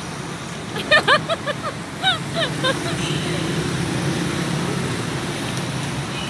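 A city bus engine running close by, a steady low hum that comes up about halfway through, over street traffic noise.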